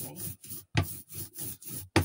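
Printmaking roller (brayer) rolling out tacky oil paint on the worktable in quick back-and-forth strokes, a repeated rubbing rasp. Two sharp knocks stand out, one a little under a second in and a louder one at the end.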